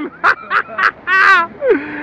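A man laughing: a run of short ha-ha pulses, then a longer drawn-out voiced sound near the end.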